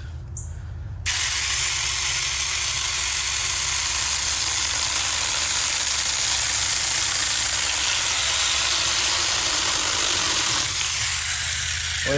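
Small battery-powered mini chainsaw starting about a second in and cutting steadily through a dead tree branch, then stopping near the end once the piece is cut off.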